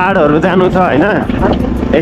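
A person's voice, with the steady low rumble of a motorcycle riding on a gravel road underneath.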